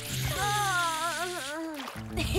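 A cartoon character's long wavering vocal sound, falling in pitch toward the end, over a soft wet hiss, as an animated kitten licks a puppy's face in a bubble bath.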